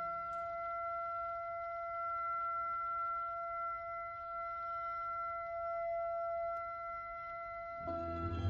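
Slow orchestral music in which one instrument holds a single long high note, steady and unchanging, over a faint hiss. Right at the end the fuller orchestra comes in with low notes.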